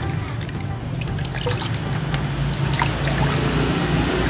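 Water splashing and trickling in a bucket as a colocasia tuber and its roots are rinsed clean by hand.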